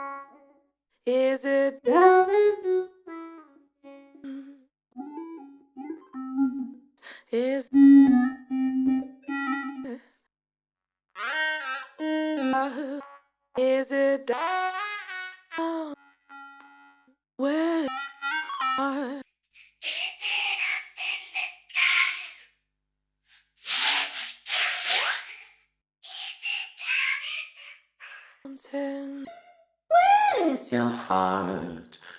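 A sung female vocal phrase played through the Korg KAOSS Replay's vocoder effects, which turn it into robotic, chord-like held notes in short phrases with gaps between them. About two-thirds of the way through, it turns to a breathy, whispery noise that follows the syllables.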